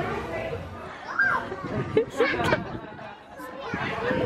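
Indistinct voices and children chattering in a crowd, with one short rising-and-falling vocal sound about a second in.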